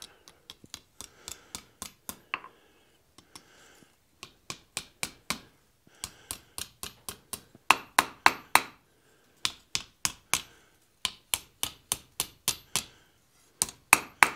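A light hand hammer striking the hot tapered tip of a steel rod on the anvil, curling it into a small scroll: sharp metallic blows, about two to three a second, in runs with short pauses between them.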